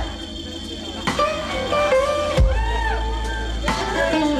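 Live electric blues guitar lead with band backing: held notes that bend up and down in pitch over a slow beat, with a drum hit about every second and a half. It is quieter for the first second, then the guitar comes back in.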